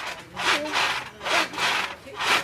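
Wheezy, breathless laughter: a run of breathy gasps, about two a second.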